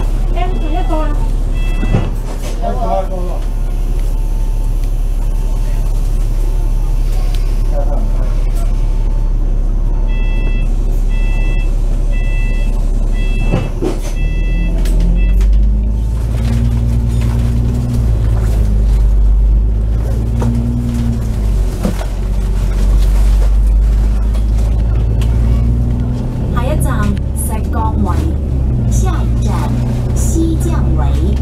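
Double-decker bus idling, with a repeated electronic beep sounding in short runs, then pulling away about fourteen seconds in, its diesel engine rising in pitch through several gear changes.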